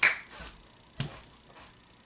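Two sharp snaps made by hands, one at the start and one about a second in, each followed by a fainter one.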